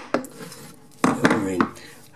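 Claw hammer tapping a screwdriver held against a wall plug in a socket's back box, driving the plug deeper into its over-drilled hole: a few sharp metallic taps near the start and a louder knock about a second in.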